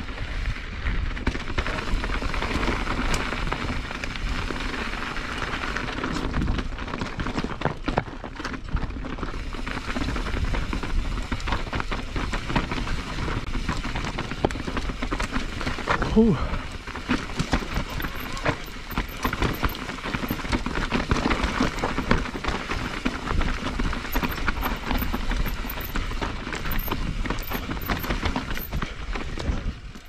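Mountain bike riding over rocky singletrack: a steady rumble of tyres on dirt and stone, with frequent sharp rattles and knocks from the bike over rocks. Halfway through, the rider lets out an "ooh."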